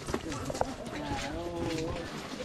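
Voices of people talking at some distance, with a few sharp taps in the first second.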